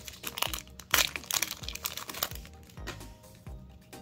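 Foil trading-card booster pack wrapper crinkling and crackling as it is pulled open by hand, loudest about a second in, over background music.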